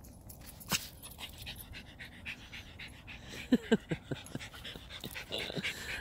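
Small dogs panting and moving about in dry dirt and pine needles while playing for a stick, with a sharp click under a second in and a few short, falling vocal sounds from a dog about three and a half seconds in.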